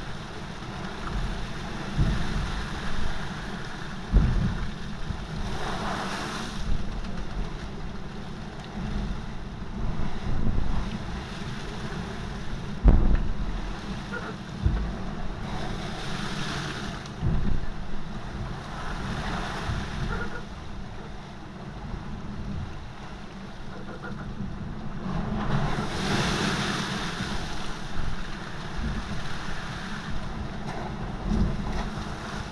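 Seawater rushing and spraying over the deck of a Volvo Ocean 65 racing yacht sailing fast in gale-force wind, in repeated surges, with wind buffeting the microphone. A few sharp low thumps come through, the loudest about halfway through.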